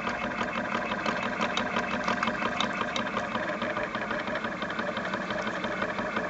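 CNC Shark Pro Plus router's stepper motors driving a touch probe slowly across a medal during a 3D scan: a steady mechanical hum with scattered faint clicks.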